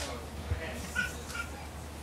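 Handheld microphone handling noise as it is passed along, over a steady electrical hum, with a low thump about half a second in and two short, faint high squeaks about a second in.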